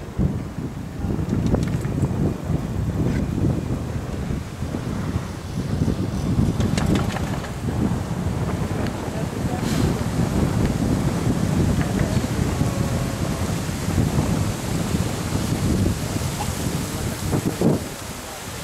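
Wind buffeting the microphone of a camera riding a moving chairlift: a steady, rough low rumble, with a few faint clicks.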